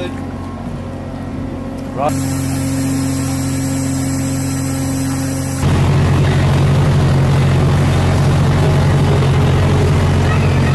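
Steady low drone of a ship's engines and machinery on deck. It changes about two seconds in and becomes louder and rougher from a little past halfway.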